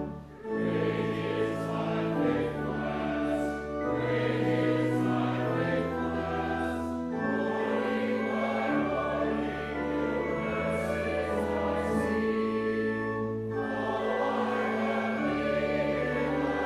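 Church choir singing in parts, holding long notes over steady low accompanying tones, with a brief break in the sound just at the start.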